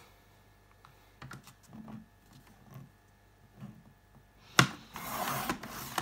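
Tonic paper trimmer cutting 220 gsm black cardstock: a few faint soft knocks as the card is positioned, then a sharp click about four and a half seconds in, followed by about a second of scraping as the blade runs through the card.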